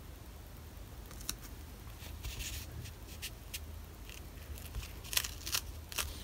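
Faint rustling and scattered sharp clicks as a strip of sticky cloth tape is lined up and laid onto a hardback book cover by hand, over a low steady hum.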